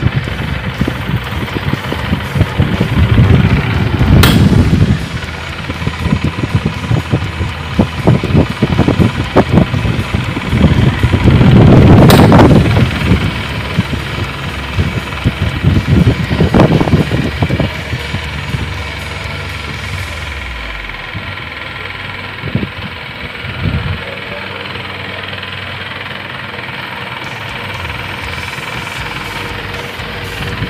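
Two pedestal electric fans running with stacked extra blades: a steady whirring hum with a rattly vibration. Gusts of the fans' wind hit the microphone as irregular rumbling swells, loudest a few seconds in and again around the middle, before the sound settles to a steadier hum over the last third.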